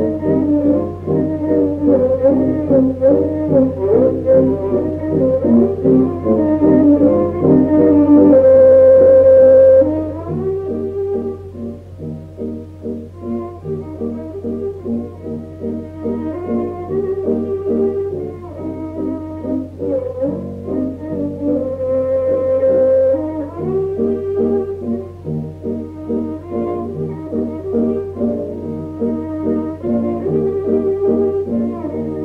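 Recorded klezmer band music played back. A lead melody line runs over a steady beat of low accompaniment notes. The lead holds one long loud note from about eight to ten seconds in, after which the music is quieter.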